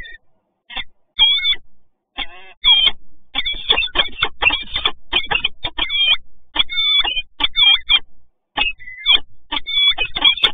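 Peregrine falcons calling at the nest box: a run of harsh, repeated calls, spaced at first and then coming almost without a break, quickening near the end.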